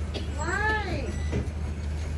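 Cleaver chopping roast duck on a thick wooden chopping block, two knocks about a second apart. A single drawn-out call that rises and then falls in pitch stands out above them about half a second in.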